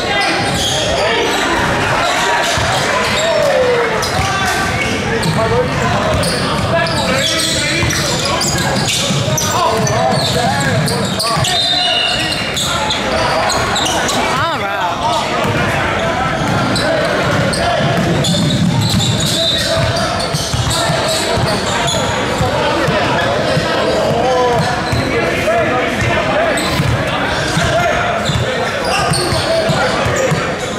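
Basketball game in a large gym: a ball bouncing and other short knocks on the court, under constant voices of players and spectators echoing in the hall.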